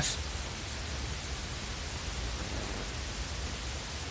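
Steady, even hiss with a low hum underneath: background noise with no distinct event.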